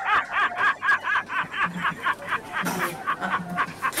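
Laughter in a long unbroken run of quick, even pulses, about five a second.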